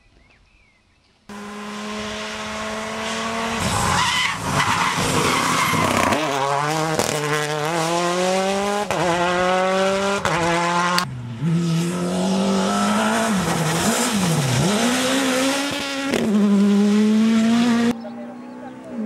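Rally car engines at full effort on a gravel stage: after a quiet start, an engine comes in suddenly, its pitch climbing in steps and dropping at each upshift as the car accelerates, over a hiss of tyres on gravel. After a cut about two-thirds through, another pass where the engine pitch dips sharply twice as the car brakes and downshifts, then climbs again.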